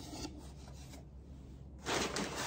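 Handling noise from unpacking: the kit's thin wooden mandolin rim and its cardboard insert rub and scrape briefly as they are lifted out of the box. A louder rustle of packing material starts near the end.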